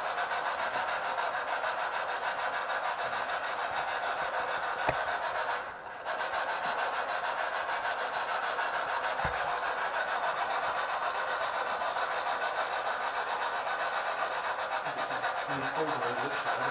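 Steady electronic static hiss with a fine, rapid pulsing, of the kind a ghost-hunting device's speaker gives out. It drops out briefly just before six seconds in. A faint click comes about five seconds in and a low thump near nine seconds.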